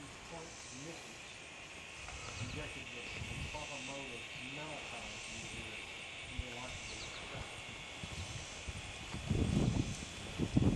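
Faint voices of people talking in the background, over a steady high-pitched drone with a faint chirring that pulses about once a second. A louder rumble comes in near the end.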